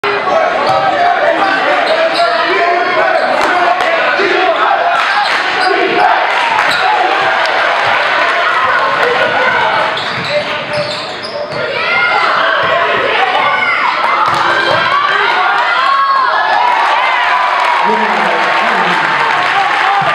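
Indoor basketball game: a basketball bouncing on a hardwood court, with crowd voices and shouts echoing in a large gym.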